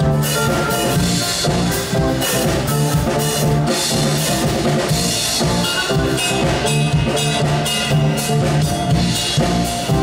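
Live band playing a jazz arrangement of a pop song: drum kit keeping a steady beat with bass drum and snare, under electric bass, electric guitar and keyboard.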